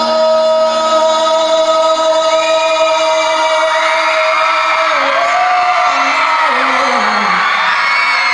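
A male voice holds a long sung note over strummed acoustic guitar. From about the middle, high rising-and-falling whoops from the audience join in over the music.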